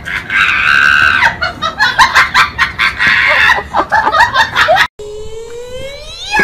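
A high-pitched voice screaming for about a second, then rapid high-pitched laughing. After a sudden cut near the end, a tone starts sliding slowly upward.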